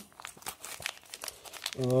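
Wrapping crinkling and crackling in the hands as small parts are unpacked: a quiet, irregular run of small crackles.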